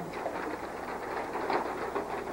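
Faint rustling of paper pages being handled and turned, with a few light ticks, over a steady hiss.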